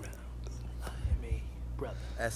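Faint, low voice speaking near a whisper over a steady low hum, with a few soft clicks.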